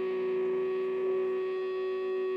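A live band's amplified instruments holding a steady drone: one strong sustained tone with several fainter held tones above it, unchanging in pitch and level.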